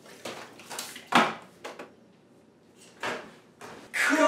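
A string of short knocks and clunks from handling kitchenware and a microwave door, the loudest about a second in.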